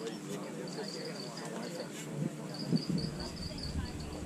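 Insects chirping in repeated short, high-pitched trills, over faint distant voices. A couple of dull thumps come a little past halfway, the second one louder.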